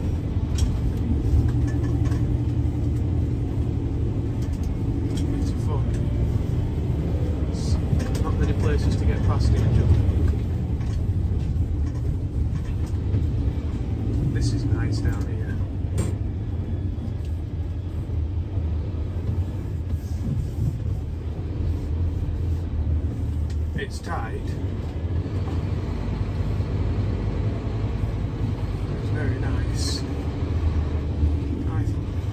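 Vehicle engine and road rumble heard from inside the cab while driving slowly along a narrow, winding lane. It is a steady low drone that swells slightly about ten seconds in.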